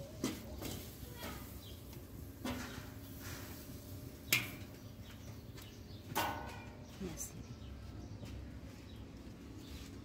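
A fork scraping and tapping on a metal comal as roasted nopales are lifted onto a plate: a few light clicks and knocks, the sharpest about four seconds in, over a low steady background.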